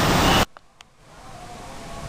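Loud street traffic noise that cuts off abruptly about half a second in, followed by a faint, steady hum of distant city traffic that slowly grows.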